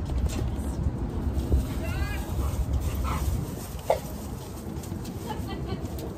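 A dog making a few short whines and yips, with one sharp yelp about two thirds of the way through, over a low rumble that eases about halfway.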